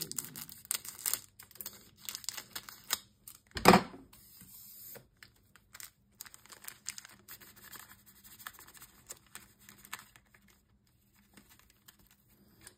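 Scissors snipping open a foil trading-card booster pack, with the foil wrapper crinkling and one louder sharp crackle about four seconds in. Then quieter rustling as the cards are slid out of the wrapper, dying away near the end.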